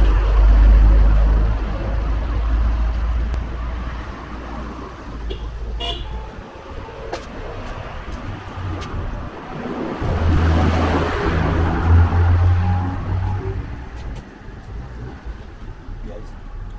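Motor vehicle traffic: a low engine rumble fades over the first few seconds, then a vehicle passes, loudest about ten to thirteen seconds in.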